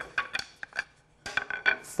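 Freshly cut tapered pine table-leg pieces knocking against each other and the table-saw top as they are gathered up by hand: a string of short, sharp wooden clacks, with a brief pause about a second in.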